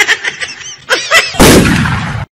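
Laughter in short, rapid "ha-ha" pulses, then about a second and a half in a loud blast-like boom that lasts under a second.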